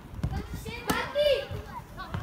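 Children shouting and calling to one another during a football game, with one sharp knock about a second in.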